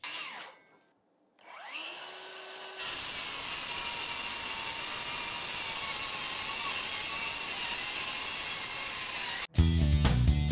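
DeWalt DCS573 brushless 7-1/4-inch cordless circular saw on a 5.0 Ah 20V Max battery. About a second and a half in, its motor spins up with a rising whine. From about three seconds in it cuts through a stack of boards, loud and steady under load, and the sound stops abruptly near the end.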